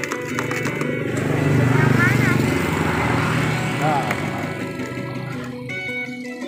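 An engine passing close by, swelling to its loudest about two seconds in and then slowly fading, over background music.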